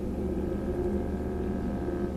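Low, steady drone from a film soundtrack, several held low tones with a faint higher tone joining about half a second in.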